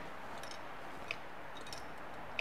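Three faint clicks, about two-thirds of a second apart, from a 1959 VW Beetle speedometer being shaken: a loose part jingling inside the housing, which the owner thinks is a bulb that has lost its holder.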